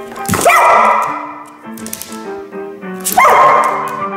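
Border collie barking twice, about three seconds apart, each bark rising sharply in pitch and trailing off over about a second.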